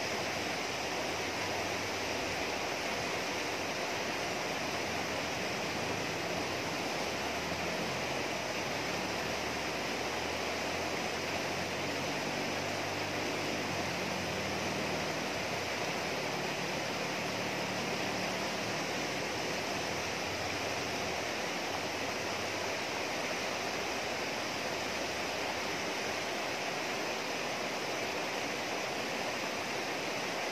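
River water rushing steadily over rocks in shallow rapids.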